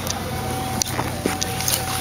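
Ford car engine idling steadily, with a few faint clicks over it.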